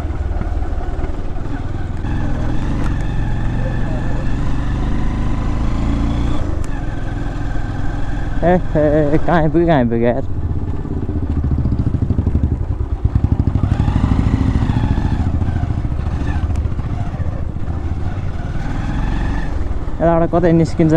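Motorcycle engine running at low road speed while being ridden, a steady low drone that gets louder for a few seconds about twelve seconds in. A voice is heard briefly about eight seconds in.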